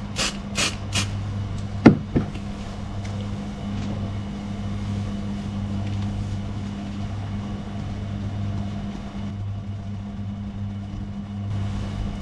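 Aerosol paint can being shaken, its mixing ball rattling in quick strokes during the first second, then a single sharp click about two seconds in. A steady low hum runs underneath.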